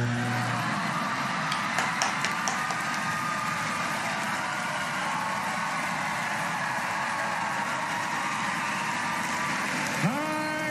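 A large theatre audience applauding and cheering as a steady wall of clapping just after a stage performance's music ends.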